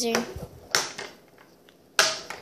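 A few sharp light knocks and clicks of small toys being picked up and set down on a hard tabletop, the loudest one right at the end.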